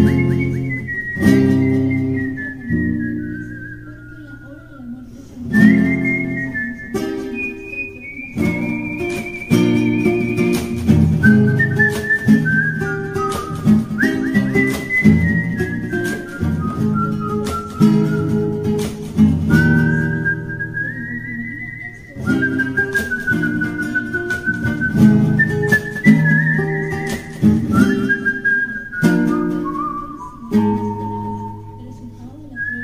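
A man whistling a melody over a strummed acoustic guitar; the whistle is a single clear tone moving up and down, the guitar strummed in a steady rhythm beneath it.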